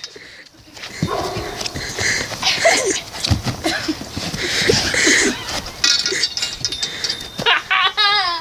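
Children yelling and shrieking in short, shrill cries while they tussle on the grass, with scattered knocks and rustles from the scuffle.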